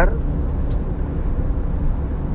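Steady low rumble of road and running noise inside a 2018 Suzuki Ertiga's cabin while it is driven, with a faint tick about a second in.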